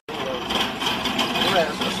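People's voices talking over steady background noise.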